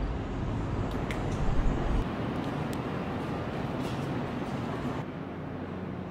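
Steady, distant city traffic hum, with a heavier low rumble during the first two seconds and a few faint clicks.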